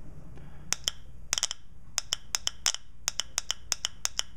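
Nissan Pathfinder automatic-transmission shift solenoid clicking open and closed each time the test probe touches its lead. About twenty sharp, irregular clicks, two to five a second, starting a little under a second in: the sound of a working solenoid.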